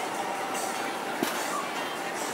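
Steady outdoor background noise from a busy gathering, with faint distant voices and a single sharp click a little over a second in.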